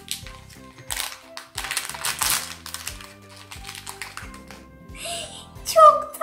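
Background music with crinkling in several bursts as a shiny plastic toy wrapper is pulled open.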